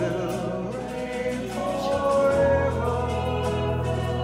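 A congregation singing a worship song together, with instrumental backing and a sustained low bass.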